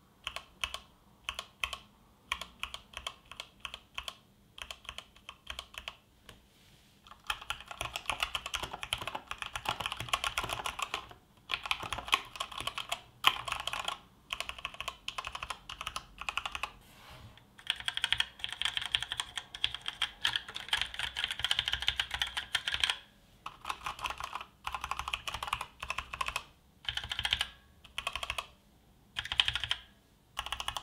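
Typing on a Varmilo keyboard with EC switches. It starts with separate keystrokes, then about seven seconds in becomes fast, continuous typing in long runs with short pauses between them.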